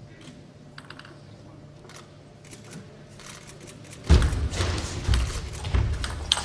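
Table tennis ball clicking against bats and table during a serve and rally, a few sharp ticks spread over the first seconds. About four seconds in, loud arena crowd noise swells up over the rally.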